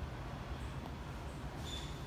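Steady low background rumble with no distinct event, and a faint brief high tone near the end.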